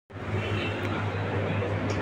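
A steady low hum under an even background rush.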